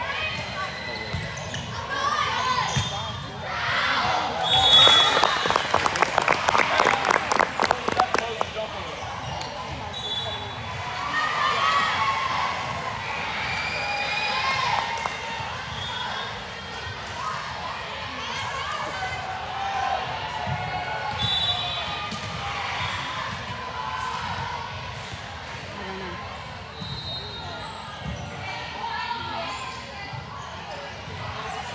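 Echoing gym sounds of an indoor volleyball match: a dense burst of clapping and cheering from about five to eight seconds in, with short sneaker squeaks on the court and ball contacts, and players and spectators calling and chatting in the hall.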